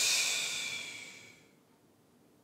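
A woman's long breathy exhale, loudest at the start and fading out about a second and a half in, as she rounds her spine in a cat-cow stretch.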